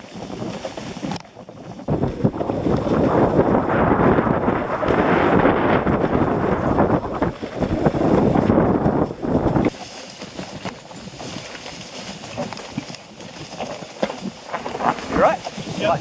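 Wind buffeting and trail rumble on a helmet-camera microphone as a mountain bike rolls down forest singletrack. The loud rush builds about two seconds in and cuts off suddenly near the ten-second mark, leaving a quieter ride noise.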